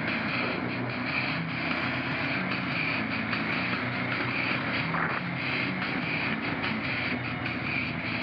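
ATV engine running as the quad rides a rough dirt trail, mixed with heavy metal music.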